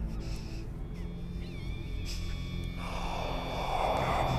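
Horror film soundtrack: a low, steady droning score. A brief wavering high cry sounds partway through, and a rush of noise swells up near the end.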